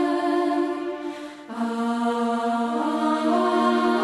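Carmelite nuns singing a slow sacred song in long held notes, with a short break about a second in before the next phrase begins.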